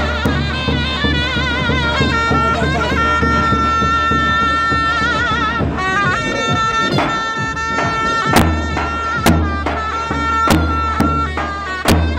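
Zurna, the loud double-reed folk shawm, playing a halay dance tune with trilled, wavering ornaments and long held notes. It is joined by deep davul drum strokes, sparse at first and settling into a steady beat in the second half.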